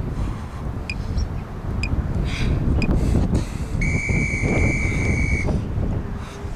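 Electronic interval timer beeping: three short countdown pips about a second apart, then one long, steady beep lasting under two seconds, signalling the change between work and rest intervals of a Tabata round. Wind rumbles on the microphone throughout.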